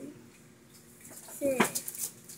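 A man's voice sounds one drawn-out counting syllable about one and a half seconds in. Around it is the faint scratch of a fountain pen nib on paper as a character's strokes are written.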